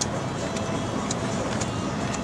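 Tobu Railway train running across a steel truss bridge: a steady rumble with short, high clicks about twice a second.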